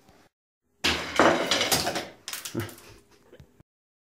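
Spring launcher fitted with a stronger spring snapping free about a second in, with the LEGO train clattering along its track, then a second knock about a second and a half later as it runs on. The sound cuts off suddenly near the end.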